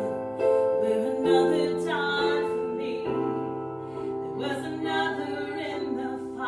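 Women singing a worship song together in sustained, phrased lines over held electronic keyboard chords.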